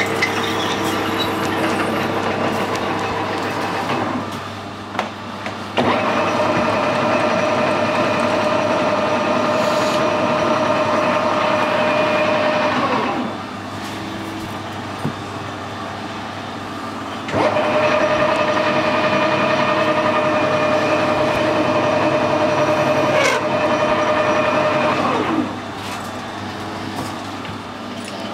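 Metal lathe running while it machines an aluminium spacer: a twist drill cutting into the bore at first, then two cutting passes of about seven and eight seconds, each adding a steady whine over the lathe's running sound, which drops back between and after them.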